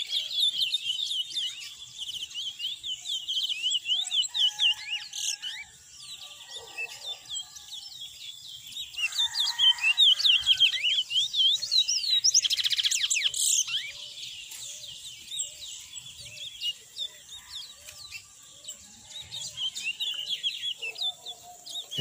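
Caged seed finches singing: quick, high, twittering song phrases repeated one after another, loudest in the middle stretch.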